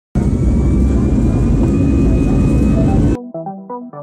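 Airbus A320's IAE V2500 jet engine at high power during a runway roll, heard from a window seat beside the wing: loud and steady, with a faint high whine over a deep rush. It cuts off suddenly about three seconds in, replaced by electronic music with plucked notes.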